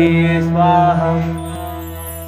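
A devotional mantra to Shiva chanted in a slow, sustained voice over a steady drone accompaniment. The chanted phrase ends about a second and a half in, and the drone carries on alone.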